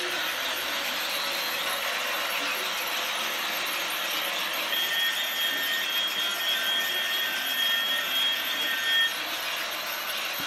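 Toy train running around a plastic track: a steady whirring rattle from its small electric motor and wheels, with a high steady whine joining about halfway through and stopping shortly before the end.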